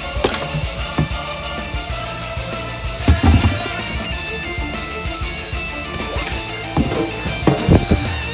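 Background rock music led by guitar, with a few loud low hits about three seconds in and again near the end.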